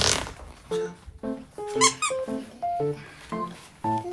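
Light, playful background music made of short, bouncy notes, with a short noisy swish right at the start and a brief squeaky upward glide about two seconds in.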